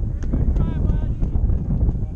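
Wind buffeting the microphone, a steady low rumble, with faint distant voices of players calling across the field.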